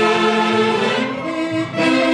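Live dance music from a wind band playing held chords. The phrase changes about a second in, and the sound dips briefly before the next notes come in near the end.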